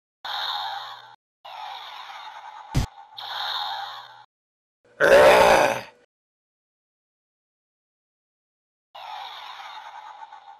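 Stop-motion sound-effect track: three short noisy effects with a sharp click near the third second, then a loud dragon roar of under a second about five seconds in. Another noisy effect starts near the end.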